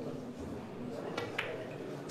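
Billiard balls clicking as a Chinese eight-ball shot is played: two sharp clicks about a second in, a fifth of a second apart, the cue tip striking the cue ball and then ball striking ball.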